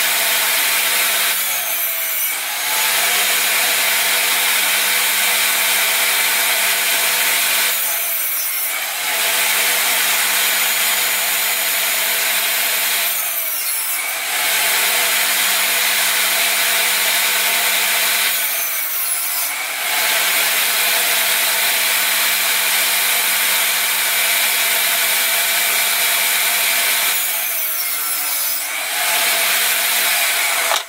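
Benchtop table saw running steadily at full speed while ripping thin wood strips. Five times, the motor's pitch and level dip briefly, about every five to eight seconds, as the blade cuts through the wood and then recovers.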